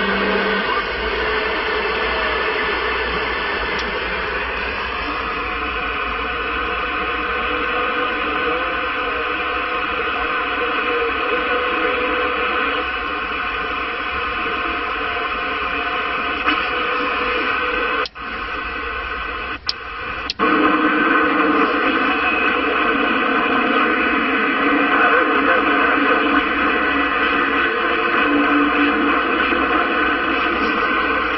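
CB radio (CRT SS6900N v6) receiving on 27 MHz during skip propagation: a steady wash of static with several steady tones from distant carriers running through it. A few clicks and a brief drop in level come between about 18 and 20 seconds in, then the static returns at full level.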